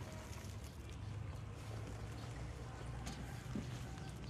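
A low steady rumble underneath faint crackling and rustling of moist soil and plastic polybag as hands press soil around a transplanted oil palm seedling, with a couple of soft clicks late on.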